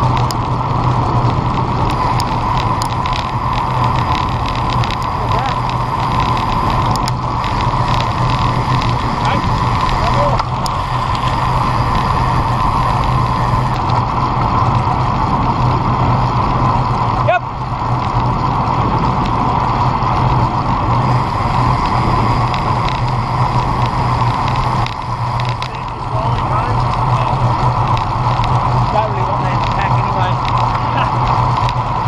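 Steady rush of wind and road noise on a bicycle-mounted action camera's microphone while riding at about 30 km/h.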